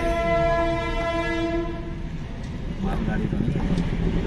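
Train locomotive horn sounding one long steady blast for about the first two seconds, followed by the rumble of the train and traffic at a level crossing.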